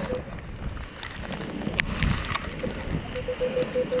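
Wind buffeting the microphone. From about three seconds in, a Minelab Equinox 800 metal detector gives a run of short, evenly spaced beeps at one pitch, about four a second, as the coil sweeps over a buried target.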